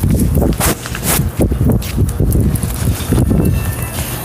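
Irregular knocks and rustling from a hand-held phone being carried at a walk, with footsteps and a low rumble on the phone's microphone.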